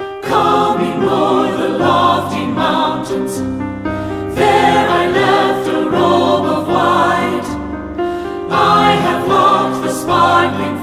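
Three-part mixed choir (soprano, alto, baritone) singing with piano accompaniment, coming in together right at the start.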